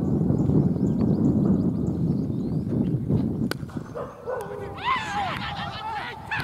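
Wind buffeting the microphone, then a single sharp crack of a cricket bat striking the ball about three and a half seconds in. A few short, high calls follow.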